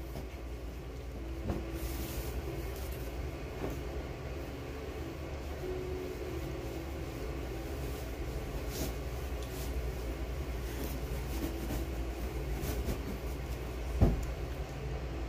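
A fan's steady low whir, with soft rustles and clicks as bed linens are handled on a massage table.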